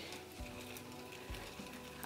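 Faint scraping and small ticks of a thermometer stirring ice water with undissolved salt in a plastic cup.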